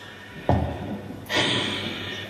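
A single dull thump about half a second in, dying away with some echo, followed by a steady hiss.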